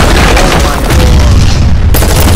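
Movie trailer sound effects: a loud cinematic boom with a deep rumble, the crash of a vehicle smashing through stacked concrete pipes, with trailer music underneath.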